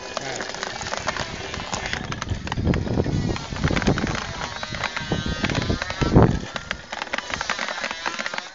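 Jotagallo Nº 1½ hand-cranked coffee depulper (descerezadora) being turned: a busy clatter of quick clicks and knocks from the turning machine, with a few heavier thumps. Freshly pulped coffee beans rattle as they drop into a plastic basin.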